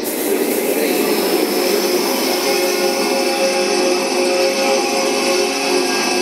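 Electronic ambient soundscape: a dense, steady hiss with several long held tones layered over it.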